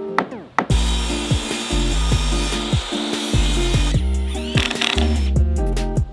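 Background music with a steady beat and plucked notes; from about a second in and for some three seconds, a power tool runs loudly over it, working into wood.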